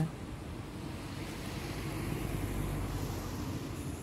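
Wind rushing on the microphone outdoors: a steady low rumbling noise that swells slightly in the middle.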